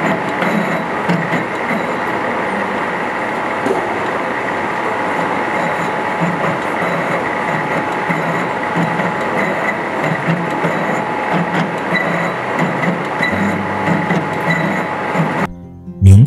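Metal-turning lathe running in a machine shop: a loud, steady mechanical noise with a thin high whine and an uneven low pulsing, cutting off abruptly just before the end.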